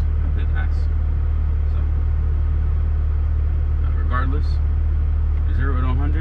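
Steady low drone of a Mk5 Toyota Supra's engine and road noise, heard inside the cabin, with a man's voice briefly speaking about four seconds in and again near the end.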